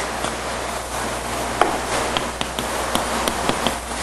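Writing on a classroom board: a run of irregular taps and scrapes, coming quicker in the second half.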